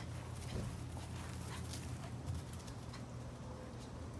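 Faint scuffs and rustles of two basenjis' paws as they move about on wood-chip mulch and grass, over a steady low hum.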